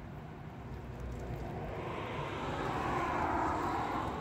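A passing road vehicle on the street, its noise swelling steadily louder toward the end.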